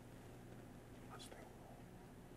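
Near silence: room tone with a faint steady low hum and one brief soft sound about a second in.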